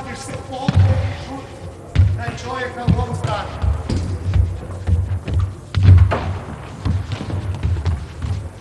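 Handball thudding on a sports-hall floor and players' running footsteps, a thud about every half second, echoing in the hall, with voices calling.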